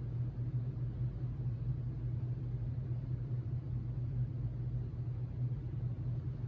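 Steady low background hum and rumble with no distinct events.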